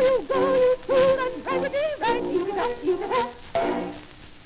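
Closing bars of a 1913 ragtime song played back from a 78 rpm record, with wavering held notes over a beat. The music stops near the end, leaving the record's faint surface hiss.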